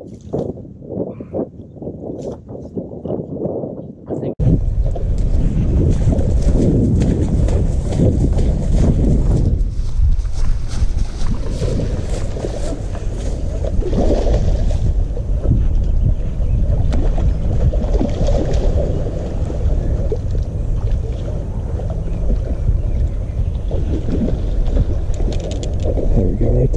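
Faint, irregular rustling for the first few seconds. Then a sudden switch to loud, steady wind buffeting on the action-camera microphone, with the rush of fast-flowing creek water beneath it.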